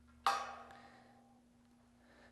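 A single sharp knock about a quarter-second in that rings briefly and fades over about a second.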